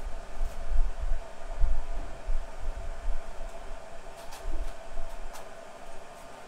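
Irregular low rumbling surges on an open microphone, over a steady faint hum, with a few faint clicks; the rumble dies down near the end.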